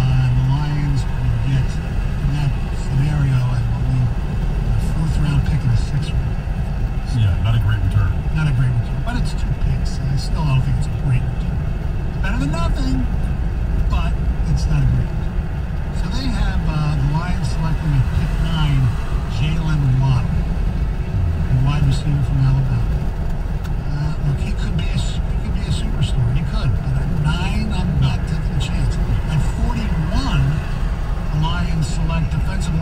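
Steady road and engine rumble inside a moving car's cabin at highway speed, with a voice talking over it on and off.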